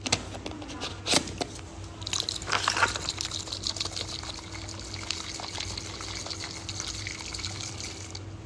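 A drink sloshing inside a lidded bottle as it is shaken hard to mix in a powder, a fast, continuous rattling slosh starting about two seconds in, after a single click.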